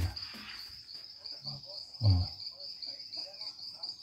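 Crickets chirping in a steady, high-pitched, pulsing chorus.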